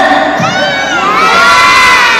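An audience of young children shouting back together in answer to a call from the stage. Many high voices overlap, starting about half a second in and carrying on loudly.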